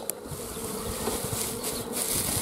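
Honeybees buzzing around an open hive in a steady hum, with light rustling near the end.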